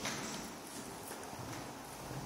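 Footsteps on a hardwood floor in an empty room: a sharp step at the start, then a few quieter steps.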